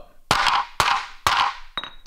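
A small dumbbell weight plate striking a board of fiber cement siding lying on a concrete floor: three sharp knocks about half a second apart, then a lighter click with a brief high ring near the end. It is an impact test; the siding does not break but chips and marks.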